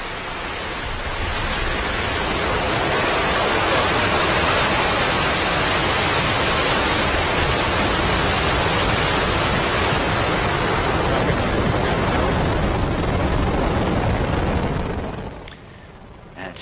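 Falcon 9's nine Merlin rocket engines at liftoff: a loud, steady rushing noise that builds over the first few seconds and then cuts off abruptly near the end.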